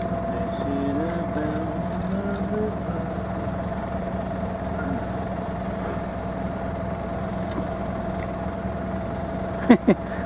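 Inboard engine of a Southerly 95 sailing yacht running at a steady speed while the boat motors, a constant hum with a steady tone in it.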